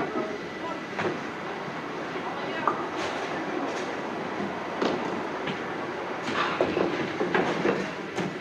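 Duckpin bowling alley din: a steady rumble of balls rolling along the lanes, broken by a few sharp clacks, with voices in the background.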